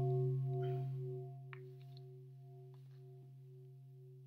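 A struck bell ringing on after the strike: a deep hum with several higher overtones, fading over the first two seconds and then lingering faintly.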